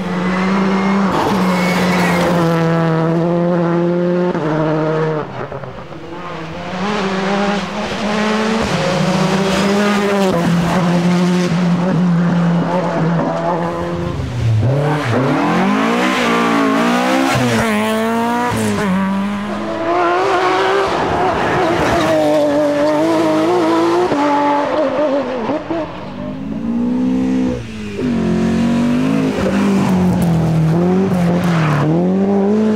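Rally cars driven hard one after another: a Citroën C3 rally car, then a Mk1 Ford Escort, engines revving high. The engine pitch holds and steps with gear changes, and in the second half it climbs and drops repeatedly through the corners.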